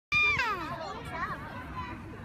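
A young child's high-pitched squeal that starts suddenly and falls in pitch, followed by softer child babbling and chatter.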